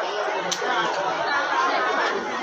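Several people chattering at once, voices overlapping into a busy babble, with a sharp click about half a second in.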